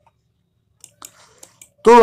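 A few faint, short clicks in a pause, then a man's voice starts speaking near the end.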